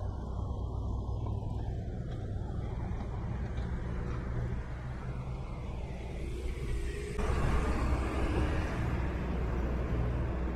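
Steady street-traffic rumble as an articulated city bus drives past close by. The vehicle noise swells about seven seconds in as the bus goes by.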